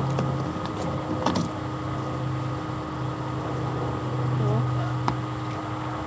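A steady low machine hum, with two light knocks, one about a second in and one about five seconds in, and faint voices in the background.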